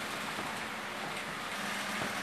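Soft, steady swishing of a long spoon stirring a liquid mixture of oil, detergent and disinfectant in a plastic bowl.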